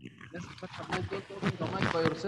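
A student's voice speaking over an online-lesson call, the words too unclear to make out.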